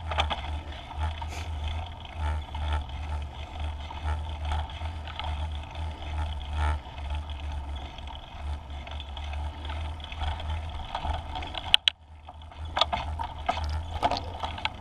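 Wind rushing over a scooter-mounted action camera's microphone as the scooter rolls along, with a steady low rumble and scattered knocks and rattles from the ride. The noise drops out briefly near the end, then resumes.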